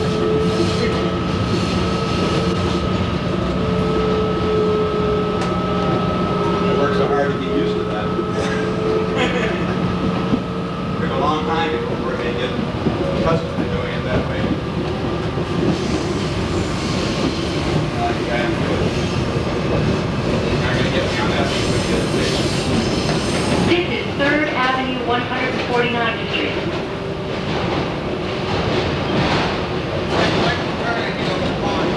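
Kawasaki R110A subway train running on its route, heard from the front car. A steady whine of several tones from its electric propulsion dies away about a third of the way in, leaving the rumble of wheels on rail, with intermittent wavering sounds, as the train heads underground.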